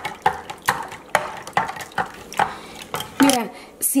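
Metal spoon stirring tamarind water in a glass pitcher, striking the glass in a steady rhythm of about two clinks a second, to dissolve the added sugar.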